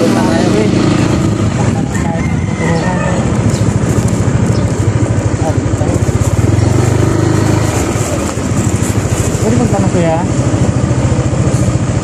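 Motorcycle engine running steadily while riding, with a person's voice heard briefly near the end.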